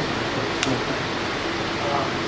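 Steady room noise, like a fan or air conditioner running, with a single faint click a little over half a second in.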